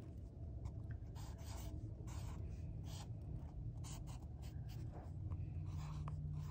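Sharpie permanent marker drawing on paper: faint, irregular strokes of the felt tip as a line is drawn.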